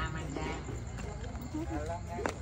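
Indistinct voices of people talking, with a few light knocks.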